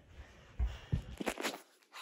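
A few soft knocks and scuffs of footsteps and a phone being handled, bunched in the middle and fading to near silence shortly before the end.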